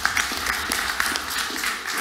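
Audience applause, a dense patter of many hands clapping, dying away near the end.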